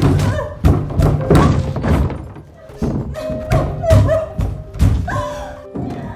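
A run of about a dozen heavy thuds, irregularly spaced, over a film music score.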